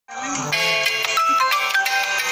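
Music playing from a phone: a melody of clear notes that step up and down in pitch, starting suddenly.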